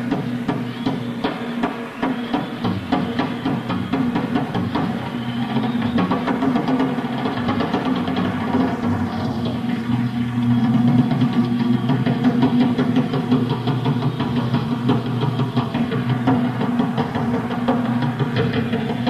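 Rock drum kit played solo in dense, rapid strokes on a raw live bootleg tape of an arena concert, getting a little louder about halfway through.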